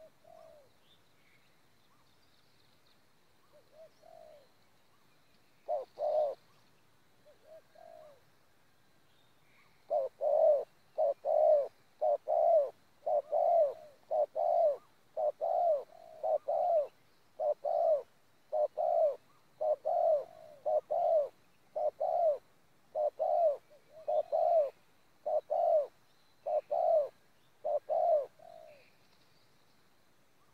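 Spotted dove cooing on the ground: a few soft coos early on, then from about ten seconds in a long run of loud, short coos, mostly in close pairs about once a second, stopping near the end.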